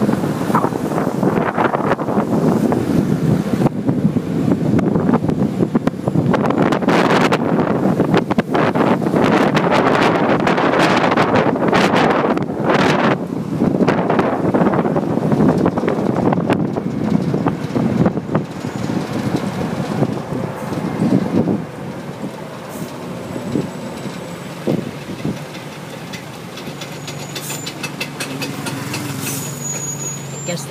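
Road and engine noise of a moving vehicle heard from on board, with wind buffeting the microphone. The noise drops sharply about two-thirds of the way through, leaving a lower, steadier engine hum near the end.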